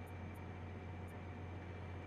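Faint, steady low hum under a light hiss: the background noise of the John Deere tractor's cab.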